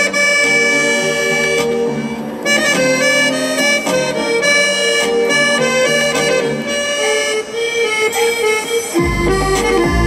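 Accordion played solo: a melody of changing notes over held chords. Deep bass notes come in near the end.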